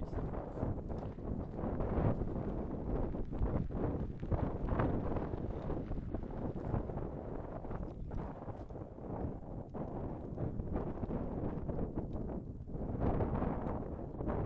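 Gusting wind buffeting the kart-mounted camera's microphone, over the rumble of a gravity kart's tyres rolling slowly across loose slate gravel.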